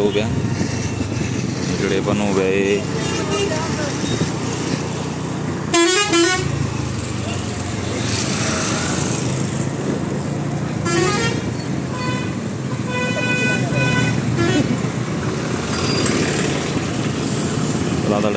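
Road traffic heard from a moving vehicle, with steady engine and road noise and vehicle horns honking: a loud wavering horn blast about six seconds in, and a quick run of short beeps a little past the middle.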